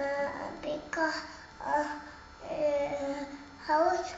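A toddler girl's voice singing or chanting wordless sing-song syllables: about five short phrases with drawn-out, held notes.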